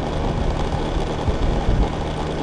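Motor scooter engine running steadily while riding along a road, with road and wind noise; a few louder low rumbles come near the end.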